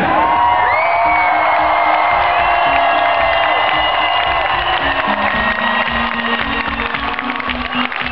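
Loud live electronic pop music through a concert PA, with held notes that step in pitch, and a crowd cheering and whooping over it.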